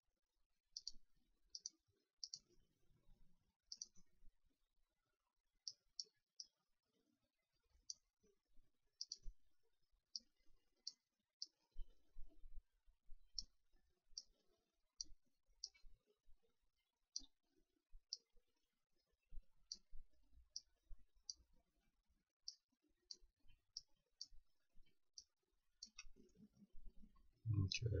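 Computer mouse clicking: sharp, short clicks at irregular intervals, about one a second, as vertices are placed one by one with Maya's Quad Draw tool.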